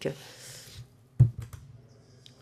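A sharp knock on a microphone about a second in, followed by a few fainter clicks, as a microphone is handled or switched on. The room is otherwise hushed.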